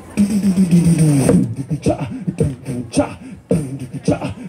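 Man beatboxing into a handheld microphone: a held, slightly falling vocal note for about a second and a half, then a rhythmic run of short vocal drum sounds.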